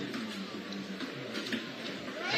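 Faint, steady outdoor ambience from a basketball tournament court: a low murmur of spectators and surroundings, with no distinct event standing out.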